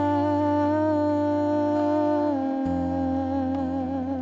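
A woman's voice singing one long wordless note over sustained keyboard chords, then stepping down to a lower note with a wavering vibrato about two and a half seconds in, as the chord beneath it changes.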